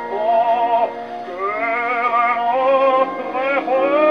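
Baritone opera singing played from a shellac 78 record on an acoustic gramophone, with little treble. A held note with wide vibrato breaks off about a second in, then a rising phrase follows.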